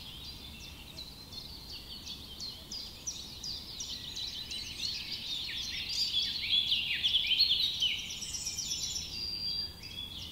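Many small birds chirping and twittering at once, a dense chorus of quick, high overlapping chirps that swells louder in the second half.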